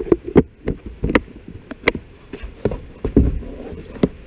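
A plastic fly box and gear being handled close to the microphone: a string of irregular sharp clicks, knocks and clatters with rustling between them, as the box is shut and stowed.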